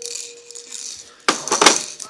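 A single electronic toy-piano note held for under a second, then loud clattering and rubbing knocks from the recording phone being handled.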